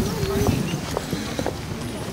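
Footsteps of a group walking on stone paving, irregular hard taps, with people talking in the background.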